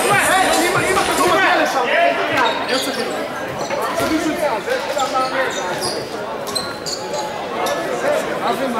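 Players' voices calling and talking in a large echoing sports hall, with a handball bouncing on the wooden court floor.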